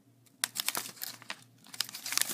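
Plastic snack wrapper crinkling and crackling in the hands as the package is handled and turned. The small crackles start about half a second in and come again near the end.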